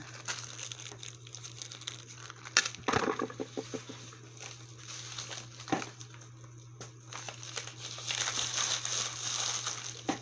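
Clear plastic zip-top bags of jewelry crinkling and rustling as they are handled, with a few sharp clicks a few seconds in and a denser stretch of rustling near the end, over a steady low hum.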